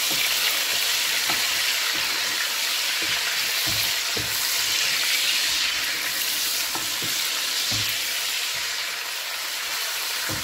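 Sliced onions sizzling steadily in hot oil in a pot, stirred with a wooden spatula that knocks softly against the pot now and then. The onions are being fried in the oil as the base for a tomato stew.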